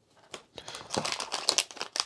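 Crinkling of a silvery plastic packet being handled, a dense run of small crackles and clicks that starts about half a second in.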